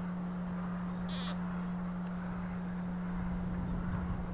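A steady low hum throughout, with one short, high call about a second in.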